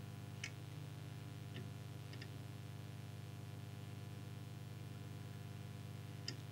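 Steady low electrical hum with four faint, light clicks in the first few seconds, as a plastic trimming tool is worked in the tuning coils of a CB radio's transmitter.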